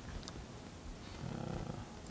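Quiet room tone with a brief low hum of a human voice, like a murmured 'hmm', about half a second long midway through, and a faint click near the start.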